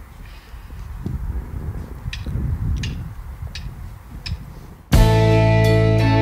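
Low outdoor rumble with four soft ticks in an even beat, then, about five seconds in, the band comes in loud all at once on a ringing chord of electric guitars, bass and keyboard.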